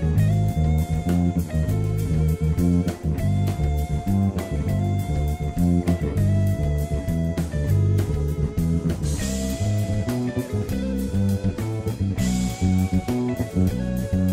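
Fender Jazz Bass played along with a jazz-fusion band track: a busy electric bass line under drums and a lead melody of long held notes. Cymbal crashes come about nine and twelve seconds in.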